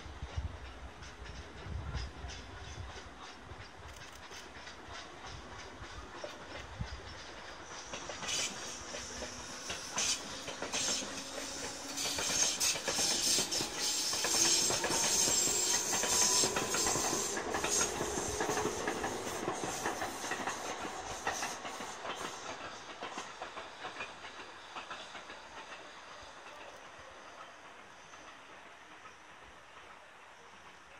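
Tobu 350 series limited express electric train pulling away and passing, its wheels clacking over the rail joints and its motors humming with a slowly rising pitch. The sound builds to its loudest about halfway through, then fades as the train moves off.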